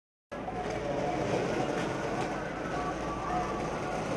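Busy outdoor background hubbub, steady and dense, cutting in abruptly just after the start from silence.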